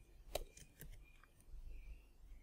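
A few faint, sharp clicks of computer keyboard keys being typed, the loudest about a third of a second in and another just under a second in.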